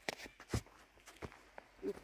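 Quiet footsteps on a dirt forest trail covered with needles and twigs, a few separate steps under a second apart.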